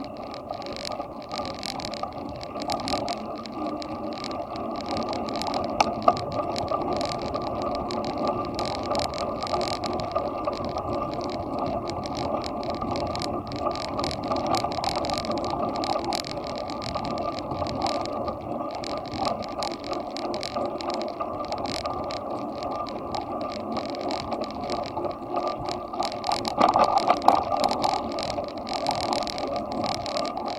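Bicycle riding along an asphalt path, heard from a camera mounted on the bike: steady tyre and ride noise with fast, dense rattling clicks, louder and rougher for a couple of seconds near the end.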